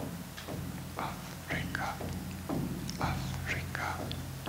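Soft, whispered speech into a microphone in short breathy phrases, over a low steady hum.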